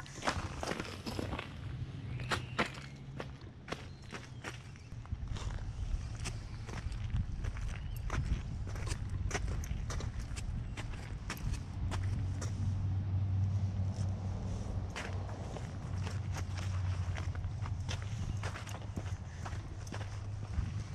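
Footsteps walking on an asphalt driveway coated with a thin layer of melting ice, each step a short crunch at an uneven pace. A low steady hum runs underneath, louder in the second half.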